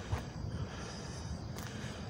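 Faint outdoor background noise: a low, even hum of the surroundings with a couple of soft clicks, nothing standing out.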